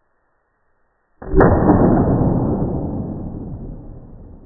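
A single shot from a Freedom Arms single-action revolver chambered in .454 Casull, firing a lighter .45 Long Colt round, a little over a second in. The report is sudden and loud and dies away slowly over the next couple of seconds.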